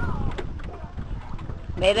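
Mostly speech: people talking, with a loud voice calling out near the end, over a steady low wind rumble on the microphone.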